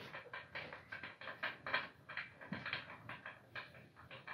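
Faint handling noises: an irregular run of soft clicks and rustles, a few each second.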